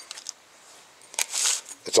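Faint metal clicks and one short scrape as a flat steel file and a metal depth-gauge tool are laid onto a saw chain clamped in a vise.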